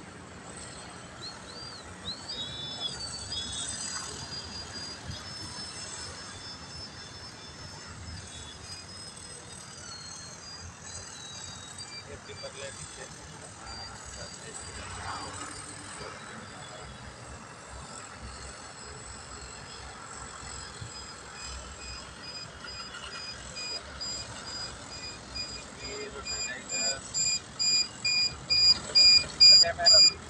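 A radio-controlled Extra 3D aerobatic model plane in flight: a faint motor whine that rises and falls in pitch under steady background noise. Near the end a steady repeating beep starts and the sound swells into quick, loud pulses.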